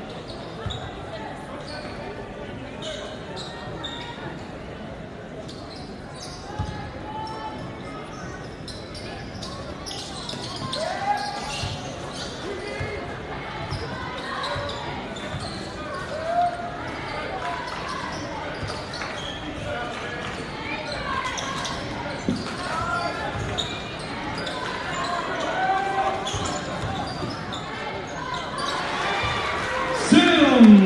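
A basketball being dribbled on a hardwood gym court during live play, with repeated bounces and the short squeaks of sneakers. Spectators' voices and shouts carry in the large, echoing gym.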